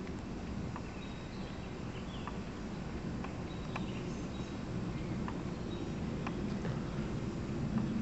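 Quiet outdoor background: a steady low rumble with faint, scattered short bird chirps and clicks.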